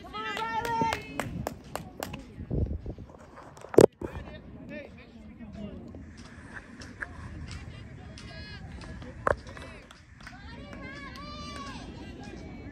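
Untranscribed voices of people talking and calling out, with a single loud sharp knock about four seconds in and a smaller one around nine seconds.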